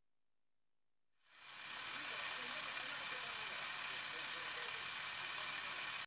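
A steady hissy noise fades in about a second in, with faint murmuring voices underneath, and cuts off abruptly at the end just as the song starts.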